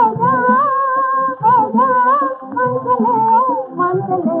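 A female voice humming a wordless melody that glides and turns in short phrases, over a steady held tone and low accompaniment, from an early-1950s Hindi film song recording.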